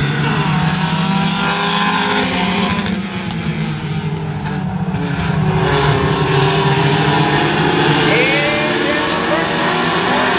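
A pack of pure stock race cars running together at speed, several engines revving at once as the field races off under the green flag.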